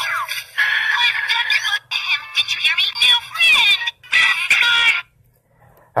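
Music with high-pitched, synthetic-sounding vocals in short phrases, stopping suddenly about five seconds in.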